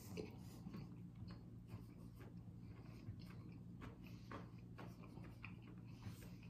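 Faint chewing of a fried chicken nugget: soft, irregular mouth clicks and crunches over a low steady hum.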